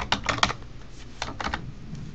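Computer keyboard typing: a quick run of keystrokes in the first half second, then a few more about a second later.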